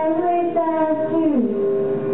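A child singing solo, holding long notes, with the melody stepping down in pitch about a second and a half in.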